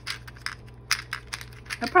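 Small metal and resin craft charms clicking against each other and the plastic compartments as fingers pick through a plastic charm organizer box: a run of light, irregular clicks.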